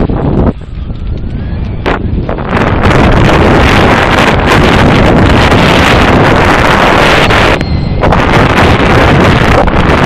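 Wind buffeting a helmet or body-mounted action camera's microphone, mixed with the rattle of a mountain bike descending a dirt trail at speed. The noise is loud and jumps up sharply about three seconds in as the bike picks up speed, with a brief lull near the end.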